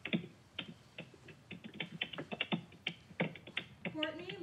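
A rapid, irregular series of light clicks and taps, several a second, with no speech.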